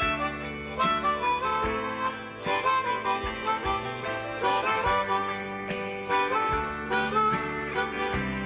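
Harmonica playing an instrumental solo over a live rock band, with guitars, bass and drums keeping a steady beat.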